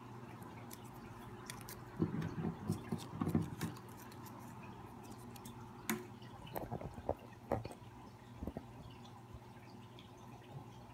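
Small paper slips being folded and handled, giving short crinkles and light ticks in a cluster from about two to four seconds in and a few more later, over a faint steady low hum.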